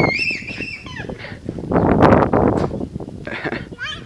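A young child's high-pitched squeal, held for about a second at the start with a wavering pitch, followed by fainter noisy sounds and a couple of short high cries near the end.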